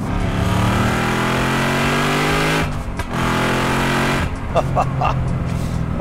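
Shelby Terlingua Mustang's Whipple-supercharged V8 pulling hard at full throttle through its Ford Performance by Borla exhaust, the pitch climbing steadily, a brief break at a gear change a little under three seconds in, then climbing again before the driver lifts off just after four seconds.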